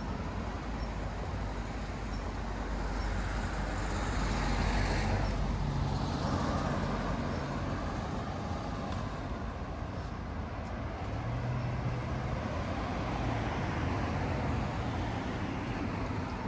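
Street traffic noise from a road: vehicles passing, one swelling past about five seconds in and another, lower and duller, around twelve seconds in.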